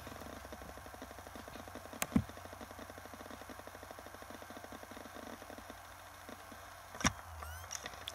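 Faint, fast, even ticking and whir from an Acer Aspire laptop's hard drive, which goes quieter about five and a half seconds in as the drive spins down in one of its repeated tries to go to sleep. There are two sharp clicks, one about two seconds in and one near the end. The owner can't yet say whether the fault lies in the drive, the motherboard or the EFI firmware.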